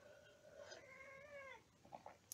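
A house cat's faint, drawn-out meow, lasting about a second and a half, its pitch dropping at the end.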